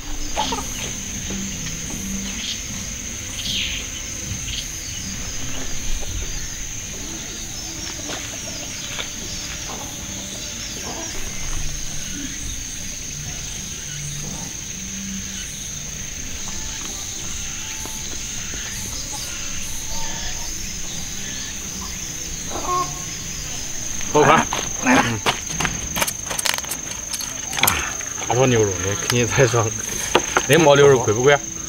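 Steady, high-pitched insect buzz in the open air, unbroken throughout, with two men talking over it from about 24 s in.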